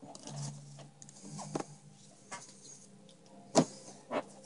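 Faint handling noise of trading cards and a foil booster pack being moved about: soft rustles and light clicks over a faint low hum, with one sharp click about three and a half seconds in.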